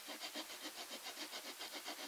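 Strip of mahogany rubbed back and forth over 80-grit sandpaper stuck to a guitar fretboard, in quick even strokes, about five a second: the fretboard's radius is being sanded into a curved wooden clamping caul.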